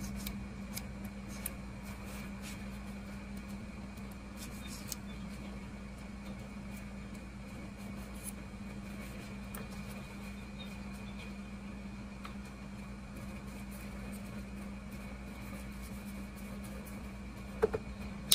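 Steady low hum with a faint high whine, with light ticks of a small brush working over the knife's metal springs in the first few seconds. Just before the end comes one sharp click: the pocket knife's blade snapping open against its backspring.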